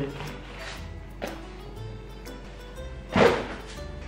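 Soft background music, with a short knock about a second in and a louder thud about three seconds in as a stack of books is put away.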